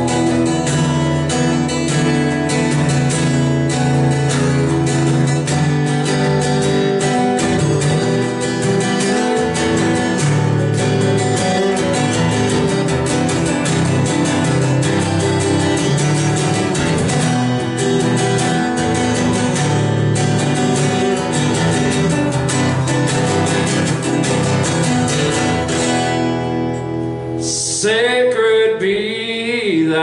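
Steel-string acoustic guitar strummed in a steady rhythm in an instrumental break. A man's singing voice comes back in over it a couple of seconds before the end.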